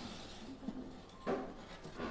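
A metal baking tray of roasted peanuts being slid out of an air fryer oven: faint handling noises, with one short scrape of metal about a second and a quarter in.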